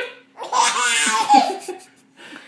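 Baby laughing: a short sound at the start, then a loud burst of laughter from about half a second in.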